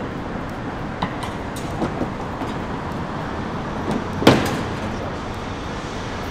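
Plastic rear bumper cover of a car being pulled loose from its clips: a few light clicks, then one sharp snap a little past the middle, over a steady background hum.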